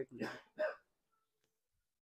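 A person's short laugh in two quick bursts, then dead silence from about a second in.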